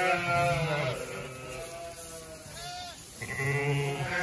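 Ewes and lambs bleating, about four calls one after another with some overlap, one of them short and higher in pitch near the end.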